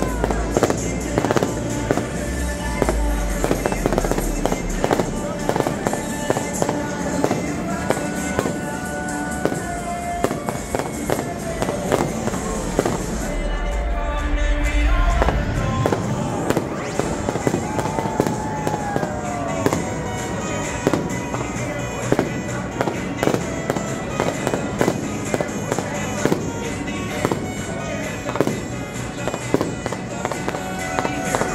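New Year's fireworks display going off in quick succession: a dense run of sharp bangs and crackles.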